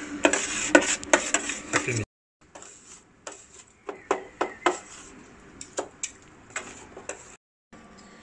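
Metal spatulas chopping and scraping on the chilled steel plate of a rolled ice cream machine, working the cream as it freezes: a quick run of sharp clicks and scrapes for about two seconds. After a sudden cut to silence, quieter scattered ticks and taps follow.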